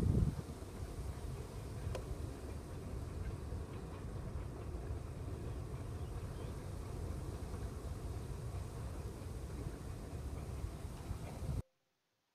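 Wind buffeting the microphone: a steady, unsteady low rumble with a faint hiss over it, cutting off suddenly near the end.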